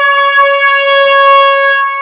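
A single long, loud horn blast on one steady high note, fading out near the end.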